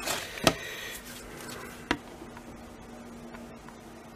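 Handling noise from a Wera Kraftform Micro precision screwdriver being taken out of its fabric tool roll: a sharp click about half a second in, a smaller one near two seconds, then a few faint ticks over a low steady hum.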